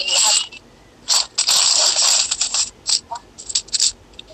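Loud scraping, hissing noise on a handheld phone's microphone, in two stretches of about half a second and one and a half seconds, followed by a run of short clicks.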